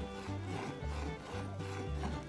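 Background music with a steady bass line, over the faint rhythmic hiss of milk squirting from a cow's teats into a bowl as it is milked by hand.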